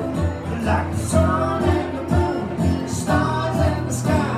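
Live acoustic music: two acoustic guitars strummed in a steady rhythm, with a voice singing.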